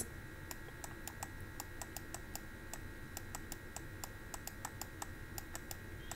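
Faint, quick, irregular clicking, about five small clicks a second, over a low steady electrical hum.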